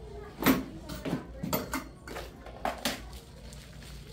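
Classroom clatter: a handful of sharp knocks and clinks of small objects being handled and set down, the loudest about half a second in, with faint voices behind.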